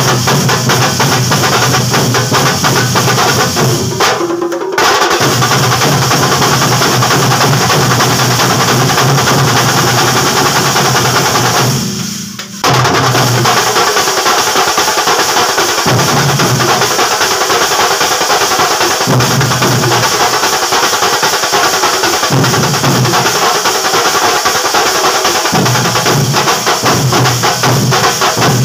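Kerala thambolam drum band playing: many sticks beating fast and loud on small double-headed drums and a large laced bass drum in a dense, driving rhythm. The rhythm drops briefly about twelve seconds in, then picks up again.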